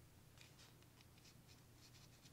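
Near silence: faint light ticks and scrapes of small vacuum-pump parts handled by hand, over a low steady hum.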